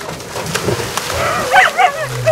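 Splashing as people jump into cold water, with a few short, high yelps partway through and near the end.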